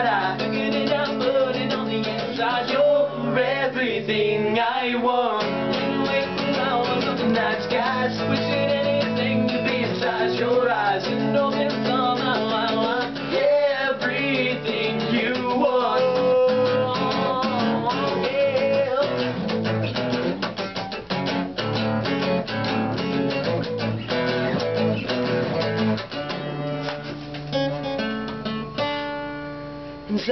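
Two acoustic guitars strummed and picked together, with voices singing along in harmony. The playing thins out and grows quieter near the end.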